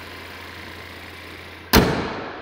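The 2021 GMC Acadia's hood slammed shut once near the end, a sharp bang, over the steady low hum of its 2.0-litre turbocharged four-cylinder idling.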